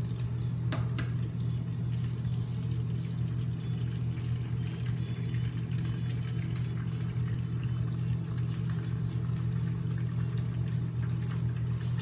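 Steady low electrical hum of a microwave oven running, with eggshells cracked against a nonstick frying pan: a sharp crack about a second in and a few lighter clicks later.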